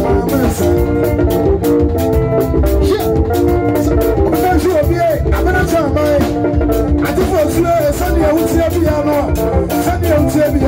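Live band music: a man singing into a microphone over electric guitar and a drum kit, loud and steady throughout.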